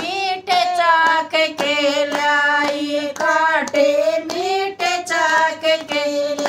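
Women singing a Hindi folk devotional bhajan in unison, the melody held in long bending notes, with steady hand claps keeping the beat about two or three times a second.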